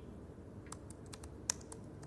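Faint, irregular keystrokes on a laptop keyboard, a few scattered taps beginning a little way in, the sharpest about three-quarters of the way through.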